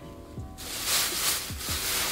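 Thin plastic shopping bag rustling and crinkling as a hand rummages in it, starting about half a second in, over background music with a soft, steady beat.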